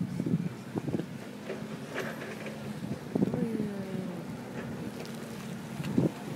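Wind buffeting a phone's microphone outdoors, with faint voices in the background and a few scattered clicks.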